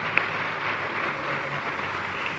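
Concert audience applauding between songs, an even spread of clapping with one brief sharp sound just after the start.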